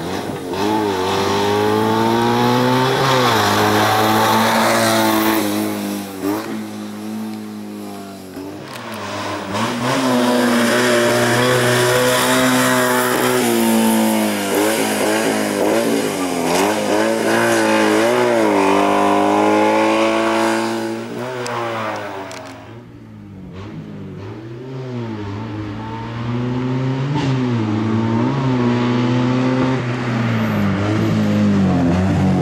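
Fiat 126 slalom race car's engine revving hard, the note climbing and falling again and again as the driver accelerates, shifts and lifts between the cones. The engine drops away about 22 seconds in, then picks up again in short bursts of revs.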